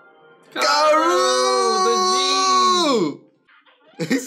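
A long, loud cry from a voice on the anime soundtrack, starting about half a second in, held for about two and a half seconds and then sliding down in pitch as it ends.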